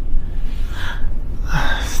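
A man breathing audibly between phrases: two breaths, the second just before he starts talking again, over a steady low rumble.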